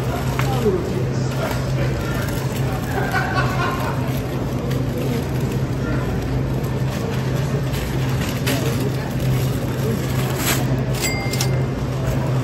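Supermarket ambience: a steady low hum under faint indistinct voices, with the light crinkle of plastic-bagged bread loaves being handled. A short high beep sounds near the end.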